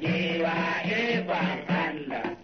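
Music: a man singing a traditional Hausa song, one sustained wavering vocal line.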